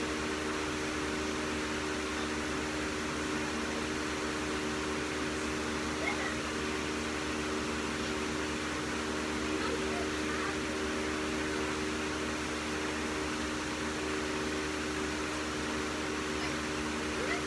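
Steady machine hum, an even noise with a few low steady tones in it, and some faint short chirps now and then.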